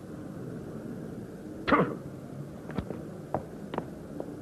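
A door swung open with a brief swish that falls in pitch, followed by a few light knocks as someone walks out through it.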